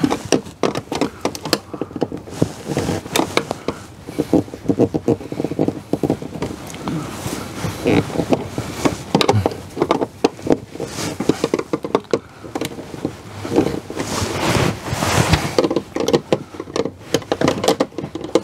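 Screwdriver working the terminal screws on an RV breaker panel's neutral and ground bus bars: an irregular run of short clicks and scrapes. The screws are being checked and snugged for loose wire connections.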